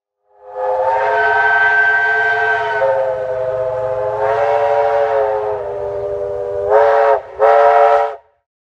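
Steam locomotive whistle sounding several notes together: one long blast that wavers slightly in pitch, then two short toots near the end.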